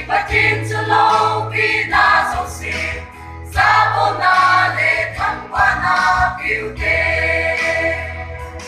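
Mixed church choir singing a gospel hymn together in phrases, over a low sustained bass note.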